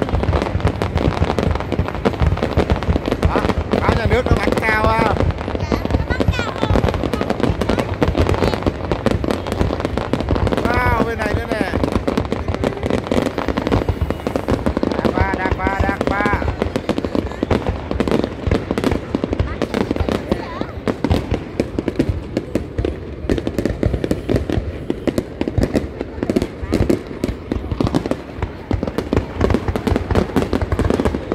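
Aerial fireworks display going off continuously: a dense run of rapid bangs and crackles, with crowd voices underneath. Wavering high tones rise over it three times, about 4, 11 and 16 seconds in.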